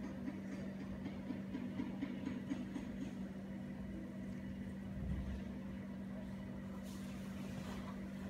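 A steady low machine hum with faint soft ticks in the first few seconds and a brief low thump about five seconds in.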